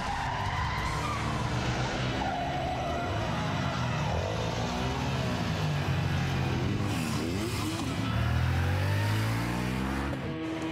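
A car being driven fast, its engine pitch rising and falling and climbing again near the end.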